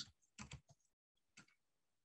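A few faint key presses on a computer keyboard during typing, scattered through the first second and a half, with near silence between.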